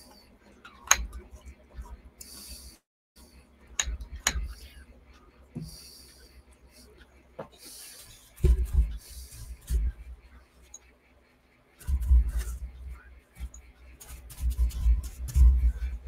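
A paintbrush being rinsed in a jar of water: short swishes and a few sharp clinks of the brush against the glass, with dull bumps and knocks in the second half.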